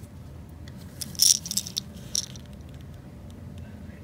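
A few short rattling clicks from a painted lipless crankbait as it is turned over in a gloved hand: the loose rattles inside the lure's body shaking. They come about a second in and again around two seconds.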